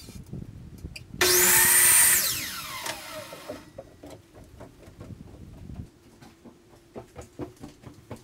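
Electric chop saw (miter saw) with a fine trim blade, switched on about a second in and cutting white trim briefly, then released: its high motor and blade whine falls steadily in pitch as the blade winds down over about two seconds. Light knocks of the trim being handled follow.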